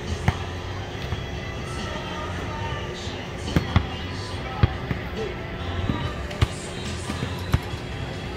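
Basketballs bouncing on an outdoor asphalt court: about six sharp thuds at irregular intervals, two of them close together in the middle.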